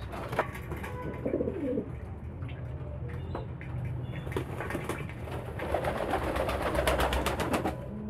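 Domestic pigeons bathing in a shallow basin of water: a coo about a second and a half in, then a rapid run of wing-flapping splashes building up in the last few seconds.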